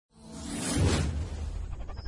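An intro whoosh sound effect that swells up, is loudest just under a second in, then fades, over a steady low drone.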